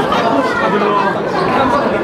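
Several people talking at once: a steady, overlapping chatter of voices.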